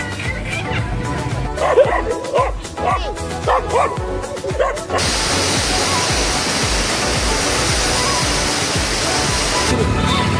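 Background music with a steady beat, with a dog barking several times in the first half. About halfway, the steady rush of a waterfall starts suddenly and cuts off just before the end.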